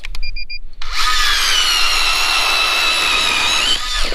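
Three short electronic beeps, then a StrikeMaster Lithium 24V battery-powered ice auger running for about three seconds, drilling a hole through lake ice. It makes a steady, high motor whine whose pitch sags a little near the end, then stops.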